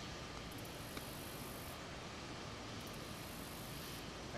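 Steady, faint outdoor background noise with no distinct source, broken only by a single light tick about a second in.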